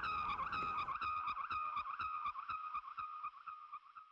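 A steady high-pitched squeal that wavers about four times a second, with faint ticks at the same rate, fading out near the end.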